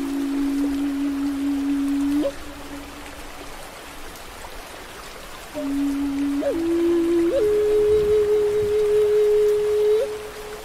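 Native American flute playing slow, long-held notes: a low note held for about two seconds that ends with a quick upward flick, then a pause, then a phrase that steps up twice to a higher note held to the end. Under the flute runs a steady wash of running water and rain.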